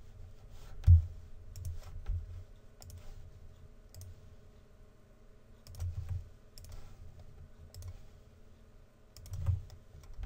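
Scattered computer mouse clicks, roughly one a second, with soft low thumps (the loudest about a second in) and a faint steady hum underneath.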